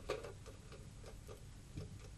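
Faint room tone with about five short, unevenly spaced clicks and taps. The sharpest comes just after the start and another near the end.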